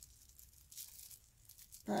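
Faint crinkling and rustling of plastic bubble-wrap packaging as it is worked off a small liquid lipstick tube by hand, with a few light crackles.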